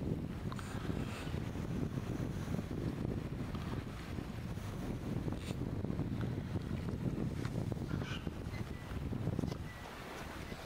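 Wind buffeting the camera's built-in microphone: a steady, fluctuating low rumble.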